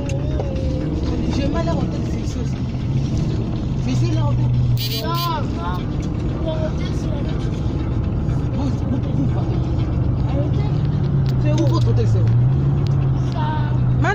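Steady low drone of a moving stretch limousine, engine and road noise heard from inside the cabin. Passengers talk and call out over it, with one high voice rising and falling about five seconds in.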